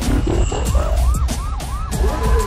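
Police siren in rapid rising-and-falling yelps, over a deep rumble and sharp hits from the film soundtrack.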